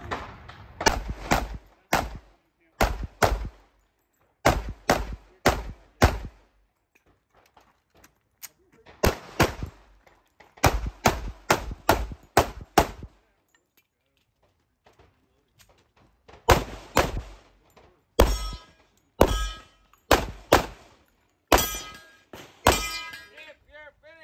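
Semi-automatic pistol firing about thirty shots, mostly in fast pairs, in three strings separated by pauses of a few seconds. Several of the later shots are followed by a brief metallic ring from hit steel plates.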